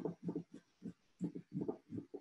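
Fresh peeled ginger root being grated by hand on the super-fine side of a stainless steel box grater: quick back-and-forth rasping strokes, about three or four a second.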